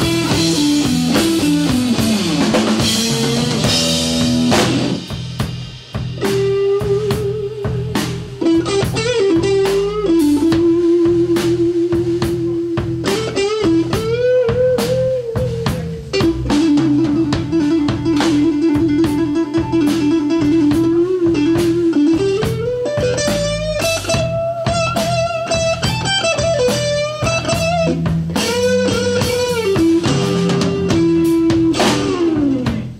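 Live blues band: a Stratocaster-style electric guitar plays a lead solo of long held single notes with wide vibrato and bends, over a drum kit and bass.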